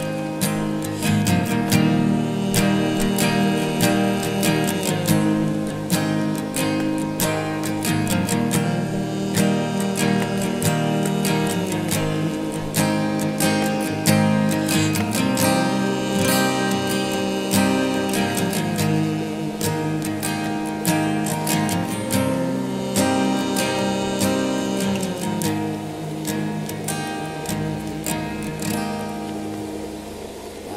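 Acoustic guitar strummed in a steady rhythm, with a wordless hummed melody carried over the chords in four short phrases.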